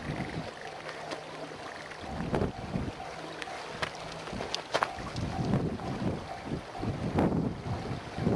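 Wind buffeting the microphone over the distant running sound of a passing East-i track inspection train, with two sharp clicks about halfway through.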